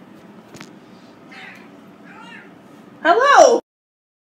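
A domestic cat gives one loud meow about three seconds in, rising and then falling in pitch, which its owner takes for the cat saying "hello". The meow stops suddenly.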